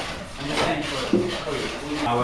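A hand tool scraping and rasping across wood in repeated strokes at a workbench, with a voice talking under it.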